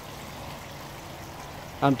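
Water falling steadily into a koi pond from its filter return, a continuous splashing rush.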